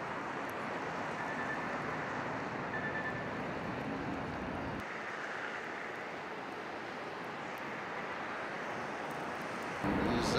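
Steady outdoor background noise, an even hiss with a low rumble. The rumble drops away suddenly about five seconds in, leaving a thinner hiss.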